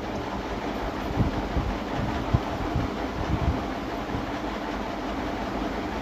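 Steady rushing kitchen background noise, with a few soft knocks as cookie dough rounds are set down on a steel baking plate.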